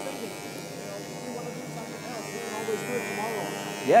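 Handheld electric engraving pen, driven straight from the 50 Hz mains, buzzing steadily as its tip scratches lines into an acrylic sheet.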